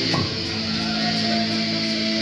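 Punk rock band playing live: electric guitars holding chords over drums with a steady cymbal beat. Just after the start there is a quick downward slide in pitch, and then the notes are held.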